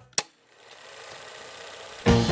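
A film projector sound effect: one sharp click, then a faint, steady mechanical whirring.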